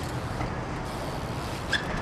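BMX bike rolling on concrete over a steady low street hum, with a short high-pitched sound near the end.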